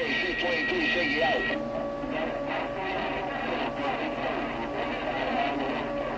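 Garbled, indistinct voices coming through a CB radio receiver, with steady whistling tones on the channel: a high one that stops about a second and a half in, then a lower one.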